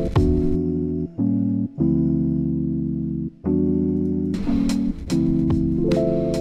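Slow, sustained electric-piano chords from a Rhodes-style virtual instrument (Arturia Stage-73 V), changing chord every second or so, over a hip-hop drum loop. The drums drop out about half a second in and come back a little after four seconds, leaving the chords alone in between.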